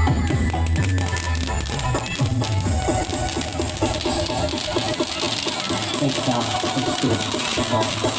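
Electronic dance music with a heavy bass beat that drops away about three seconds in, then the hissing, crackling spray of ground spark fountains (fountain fireworks) builds over the music and voices.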